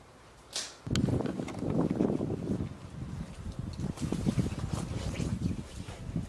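Low, rough rustling and buffeting noise from moving through bramble undergrowth, starting suddenly about a second in and going on unevenly.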